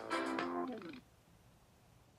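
Podcast intro jingle played through a tablet's speaker, ending about a second in with a short falling glide, followed by near silence.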